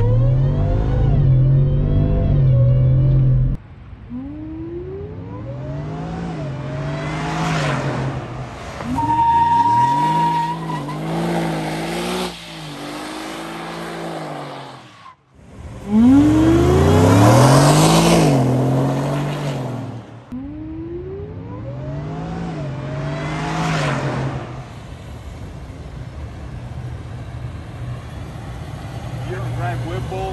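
Whipple-supercharged 5.0L V8 of a 2021 Ford F-150 revved hard again and again, its pitch sweeping up and falling back, while the tires spin and squeal on the asphalt. A brief steady beep sounds about ten seconds in.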